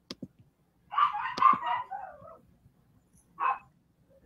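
Animal calls heard over a video call: a loud run of calls lasting about a second and a half, then one short call near the end, with faint clicks just before.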